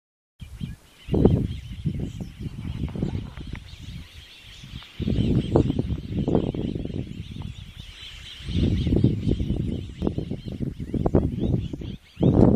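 Outdoor farm ambience: birds calling in a steady high chatter, with loud low rumbling that comes and goes in three bursts.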